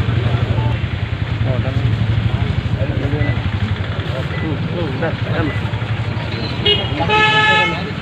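A vehicle engine idling with a steady low rumble under a crowd's overlapping talk, and near the end a vehicle horn toots once, loud and brief.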